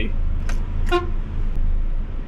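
Volvo truck's diesel engine idling with a steady low rumble inside the cab, and one short horn toot about a second in.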